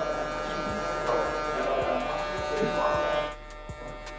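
Cordless hair clipper with a 1.5 guard, lever open, buzzing steadily as it cuts a fade; the sound drops in level a little after three seconds in. Background music with a steady beat runs underneath.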